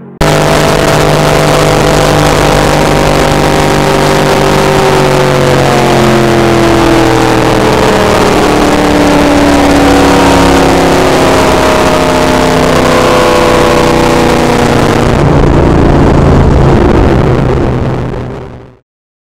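Supercharged V8 of the Terraplane land-speed car at speed, heard from inside the car under heavy wind and tyre roar. The engine note slides slowly down in pitch through the middle and turns duller about three quarters of the way through.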